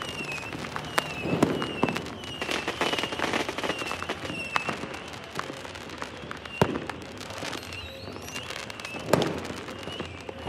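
Fireworks going off across a city: a dense run of distant pops and crackles, broken by a few louder bangs, the sharpest just past the middle and another near the end. Short, high, falling tones recur among the bangs.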